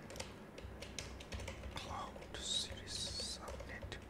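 Typing on a computer keyboard: a run of quick, light keystrokes.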